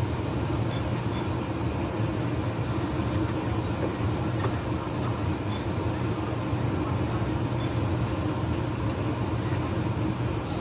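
A steady low rumble with a hiss over it, unchanging throughout, with no speech.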